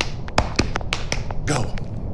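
A short body-percussion rhythm for copying: a quick run of sharp finger snaps and slaps over the first second and a half, then the spoken 'Go'.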